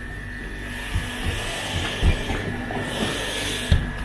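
Supermarket freezer cabinets humming steadily with a hissing rustle, a few low knocks from handling, and a hand sliding over a glass freezer lid near the end.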